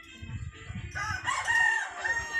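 A rooster crowing: one long, loud call that starts about a second in.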